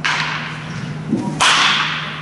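A baseball bat strikes a ball about one and a half seconds in with a single sharp crack. A noisy burst at the very start fades over about half a second, and a steady low hum runs underneath.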